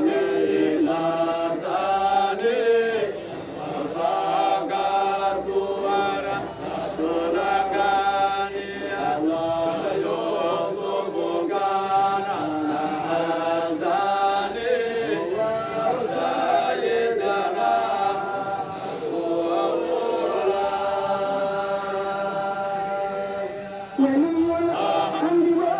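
A group of men chanting a Qadiriya Sufi dhikr together in unison through handheld microphones: a continuous melodic chant with long held notes.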